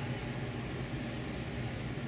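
Steady low hum of a large room's background noise, with no other distinct sound.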